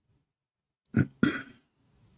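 A person makes two short throat noises about a second in, the second a quarter second after the first and trailing off briefly, like a burp or a clearing of the throat.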